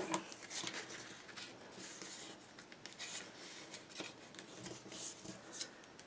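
Bone folder rubbed along the score lines of scored paper to crease the folds: faint, irregular scraping with small taps and paper rustling.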